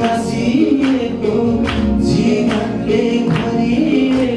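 A Nepali Christian worship song sung live into a microphone, over a band accompaniment with a steady beat.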